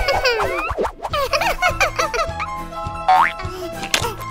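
Children's cartoon background music with springy cartoon sound effects, many bending, sliding pitches over the first couple of seconds and a quick rising glide about three seconds in.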